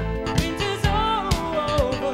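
Jazz-fusion band playing live: a steady drum-kit beat under bass and keyboards, with a wavering melody line falling in pitch through the second half.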